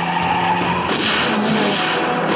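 Car tyres squealing and skidding on asphalt, with car engines running at speed. The screech turns hissier and louder about halfway through.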